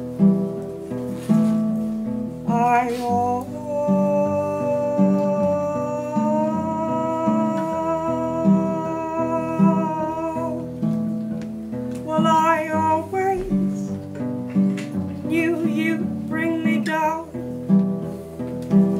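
A steel-string acoustic guitar played in a steady repeating pattern, with a woman singing over it: a long held note for about seven seconds early on, then a shorter wavering vocal line near the end.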